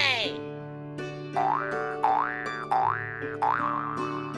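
Background music with cartoon sound effects: a falling whistle-like glide at the start, then four quick rising boing sounds, one about every 0.6 s.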